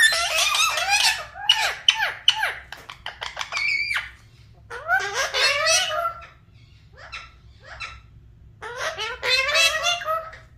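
Indian ringneck parakeets chattering and squeaking in quick bursts of warbling, talk-like calls, with a lull about two thirds of the way through holding only a few clicks before the chatter picks up again.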